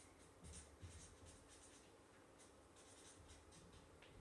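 Faint scratching of a felt-tip marker writing on a sheet of paper on a desk, in short irregular strokes, with a couple of soft knocks near the start.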